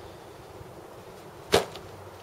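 A single sharp knock about one and a half seconds in: a Gerber Gator Machete Jr. in its nylon sheath being put down.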